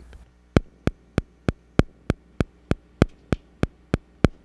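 A steady, evenly spaced click, about three a second, over a low mains hum.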